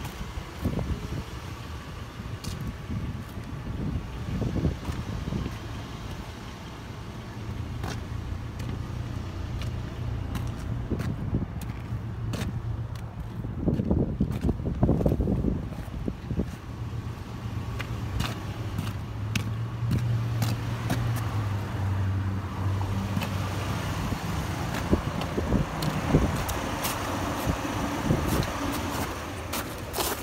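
A car engine running steadily at idle, with scattered footsteps and clicks on wet, gritty pavement.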